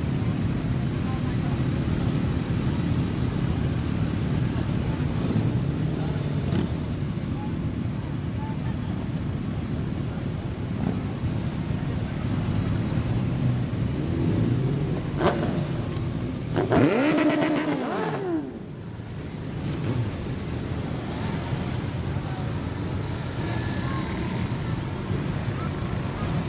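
A procession of motorcycles riding slowly past, a continuous mixed rumble of many engines. One engine's note rises and falls sharply about seventeen seconds in.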